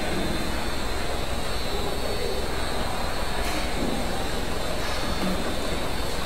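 Automatic double-side adhesive labeling machine running: a steady mechanical noise from its motors and conveyor, with a faint steady high tone and a low hum under it.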